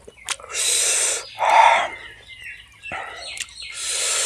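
Close-miked eating sounds as a man sucks and slurps gravy off a chicken leg piece. There are about four breathy slurps; the second, about a second and a half in, is the loudest.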